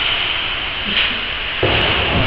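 Steady hissing background noise, with a low rumble coming in near the end.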